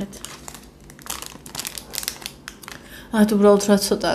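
Crinkling of a plastic food wrapper being handled: a quick, irregular run of crackles for about three seconds. A woman's voice comes in briefly near the end.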